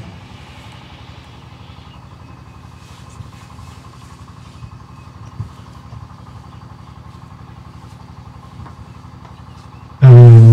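A steady, quiet low hum with a few faint ticks or knocks partway through.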